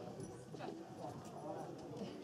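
Footsteps on brick paving, a few hard taps, under faint background chatter.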